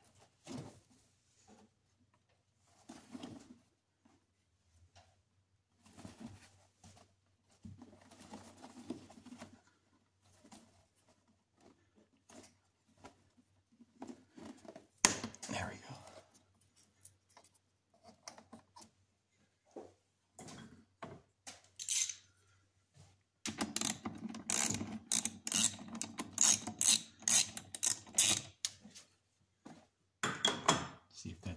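Hands working plastic electrical connectors and rubber hoses in a car's engine bay: scattered clicks, snaps and rubbing, busier and more continuous near the end.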